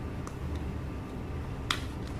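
Clear slime being poured and spooned into a glass bowl: a faint click about a quarter second in and one sharp click near the end as the spoon and plastic cup knock against the glass. Underneath runs a steady low rumble of recording noise, raised by the recording being amplified three times.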